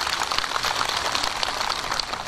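Audience applauding, a steady dense patter of many hand claps.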